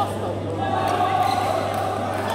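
Badminton play on an indoor court: a shoe squeaks on the court floor at the start, and there are a few light hits, with voices in the background.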